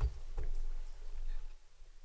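Low rumble and a few faint knocks on an open microphone being handled as a speaker gets ready to talk.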